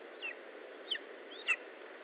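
A lesser spotted eagle chick calling three times, short high calls about half a second apart, each dropping in pitch, over a steady hiss.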